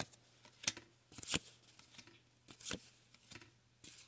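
Pokémon trading cards being flipped through in the hand, each card slid off the front of the stack: six or so brief, quiet swishing snaps spread across the few seconds.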